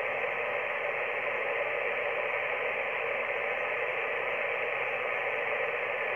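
Steady hiss of band noise from an Icom IC-718 HF transceiver's speaker, receiving in lower sideband with no station transmitting on the frequency. The hiss is held within the narrow voice range of the sideband filter.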